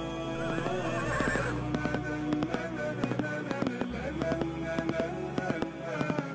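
Music with sustained tones and sharp percussive taps, with a horse whinnying about a second in.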